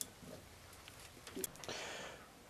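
A few faint metallic clicks of a wrench on the front brake caliper bolts as they are tightened, twice in quick succession about one and a half seconds in.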